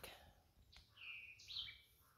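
Faint bird calls over near silence: a quick downward-sliding note about three-quarters of a second in, then a held high whistle ending in a short upswing.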